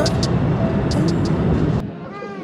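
Postojna Cave tourist train running along its track: a loud, steady running noise with voices over it, cutting off abruptly near the end.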